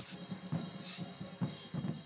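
Band drums playing a beat: bass drum and snare hits with cymbal.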